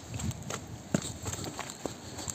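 Footsteps of a person walking down a wet, leaf-strewn dirt path, a few separate steps at an uneven pace.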